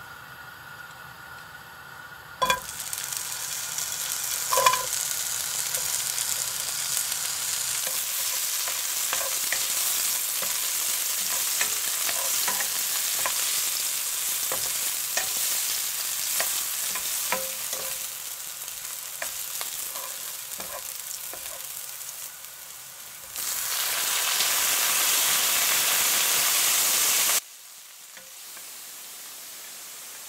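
Sliced onion and carrot frying in hot oil in a nonstick pan: a steady sizzle starts with a thump about two seconds in, with light clicks of a wooden spoon stirring. Near the end a louder sizzle, as cubes of pork go into the pan, runs for about four seconds and then cuts off abruptly.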